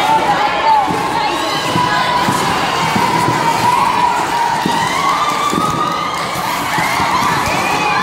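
Crowd of many people cheering and shouting all at once, with voices overlapping continuously and a few high shrieks near the end.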